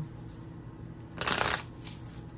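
A deck of cards being shuffled in a short rustling burst lasting about half a second, a little past the middle.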